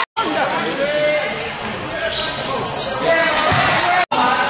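Basketball bouncing and thudding on a sports hall floor during play, with shouting from players and spectators over it and the echo of a large hall. The sound cuts out briefly right at the start.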